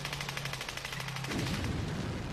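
Machine gun firing a rapid, even burst over a low steady hum. A little past halfway this gives way to low rumbling.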